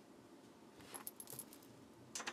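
A brief cluster of small, sharp clicks and light rattles about a second in, over near-silent room tone.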